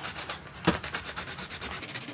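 Crayon colouring paper in rapid back-and-forth scratchy strokes, with a single sharp knock about two-thirds of a second in.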